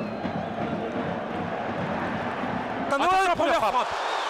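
Steady crowd noise from a football stadium. About three seconds in it swells, with high-pitched hiss, as a shot goes in toward goal.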